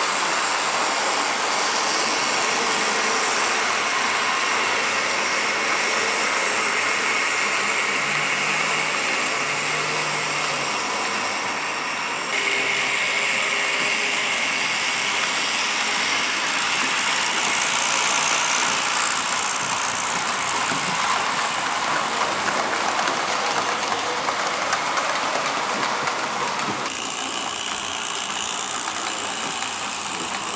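Several TT-scale model diesel locomotives and their wagons running on a model railway layout, a steady mechanical whirring and rolling from their motors and wheels on the track. It gets a little louder about twelve seconds in and softer near the end.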